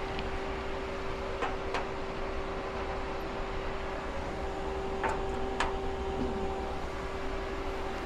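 Steady machine hum with one constant tone from a powered-on CNC lathe, with a few faint clicks.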